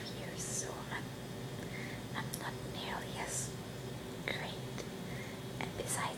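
A woman whispering close to the microphone, with sharp hissing s sounds.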